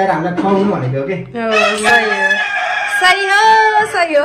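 A rooster crowing: one long call starting a little over a second in and lasting about two and a half seconds.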